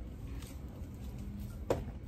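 Small decorative pebbles dropped from a small scoop onto potting soil: a faint tick and then one sharp click near the end, over a low steady background rumble.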